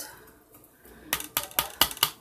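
A spoon clicking against a bowl as it stirs a wet onion mixture, with a quiet first second, then about five quick sharp clicks in the second half.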